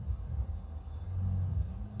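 Low, uneven background rumble with a faint high steady whine: room or ambient noise picked up by the microphone.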